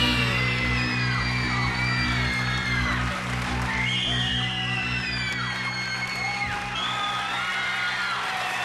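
A rock band's last held chord on electric guitar rings on and fades out over the first three seconds. An audience cheers and whoops over it, with many rising and falling calls.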